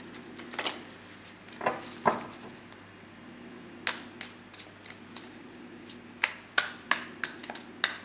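A deck of tarot cards being shuffled by hand: about a dozen sharp, irregular taps and clicks of cards against each other, over a faint steady hum.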